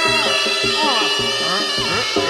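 Live Javanese barongan/jaranan music: a reedy wind melody with held notes and pitch bends over regular drum strokes.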